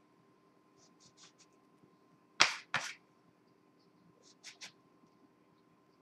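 A round cookie cutter pressed down through rolled pie dough, knocking on the countertop: soft clicks early, two sharp taps about midway, and two lighter taps near the end.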